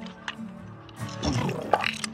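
Background music with steady held tones, over clicking and rustling as a fabric shoulder bag is handled and slung on. About a second in, a louder rough sound lasts just under a second.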